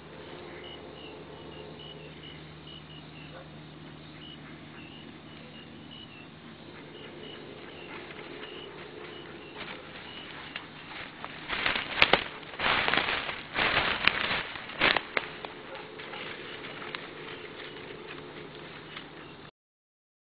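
Insects chirping steadily in a field, faint high chirps repeating over a low hum. About halfway through come a few seconds of loud, rough rustling bursts.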